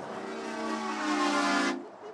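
A passing lorry's air horn blowing one long steady blast that cuts off sharply near the end, a honk of support for the protesting farmer.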